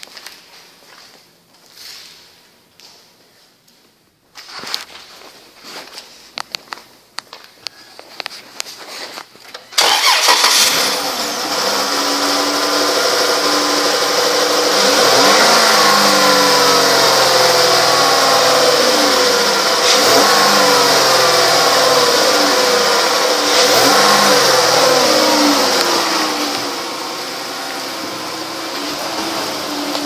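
2011 Dodge Journey's 3.6-liter Pentastar V6 cranked and started about ten seconds in, after a few light knocks. It then runs with its speed wavering up and down, settling lower and quieter near the end.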